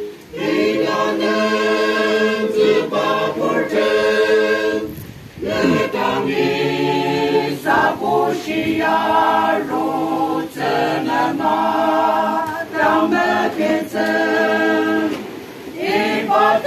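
Small mixed church choir singing a hymn unaccompanied, in several voice parts, with short pauses between phrases about five seconds in and near the end.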